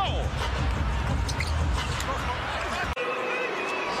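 Basketball arena crowd noise over live play, with sneakers squeaking on the hardwood and the ball bouncing. About three seconds in the sound cuts off abruptly to a quieter arena, with a brief steady tone.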